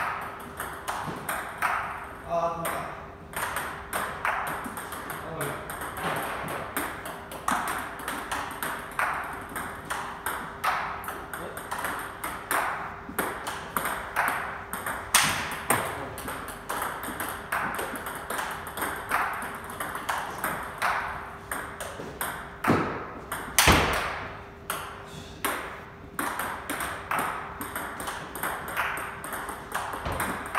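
Table tennis rally: a celluloid-type ball struck by rubber-faced rackets and bouncing on the table, a steady run of sharp clicks. Two strikes stand out louder, about halfway through and about three-quarters through.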